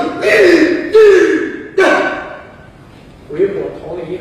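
A man's voice in a loud, animated storytelling delivery, with long falling pitch glides in the first two seconds and a short pause before he goes on.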